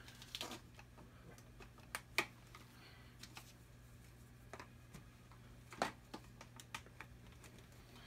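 Half-inch PVC pipes and tee fittings clicking and knocking as they are pushed together by hand, with sharper knocks about two and six seconds in, over a faint steady hum.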